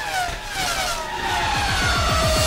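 Race-car engine sound effect sweeping past with a falling pitch, opening a theme jingle whose low rhythmic beat builds up in the second half.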